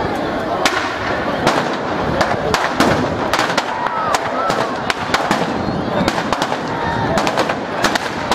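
Firecrackers in a burning New Year's effigy going off in an irregular string of sharp cracks, a few a second, over crowd voices.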